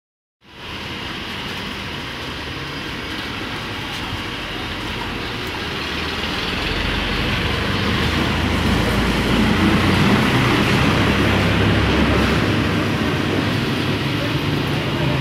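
Steady road traffic noise. It grows louder in the second half as a low vehicle rumble swells.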